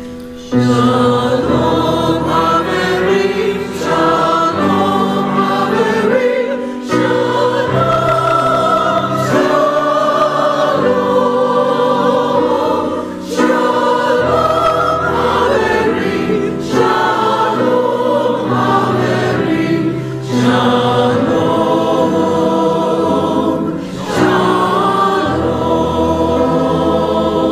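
A church choir singing a hymn in unison phrases, with a short breath between phrases every three to four seconds.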